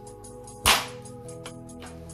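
A thin foam sheet bent by hand until it snaps: one sharp, loud crack a little over half a second in. Steady background music plays.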